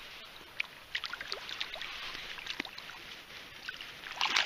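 Light splashing and dripping as a hooked rainbow trout thrashes at the surface of shallow stream water, with many small irregular splashes over a steady wash of water.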